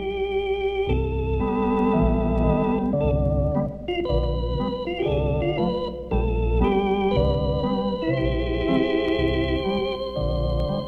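Lounge organ playing sustained chords with a wavering vibrato over bass notes pulsing in a steady rhythm, played back from a 1970s vinyl LP.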